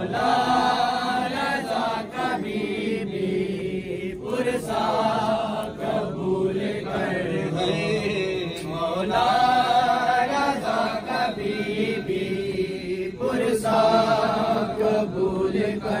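Men chanting a noha, a Shia mourning lament, into a microphone: a slow, repeating sung line in phrases of a few seconds with short breaks between.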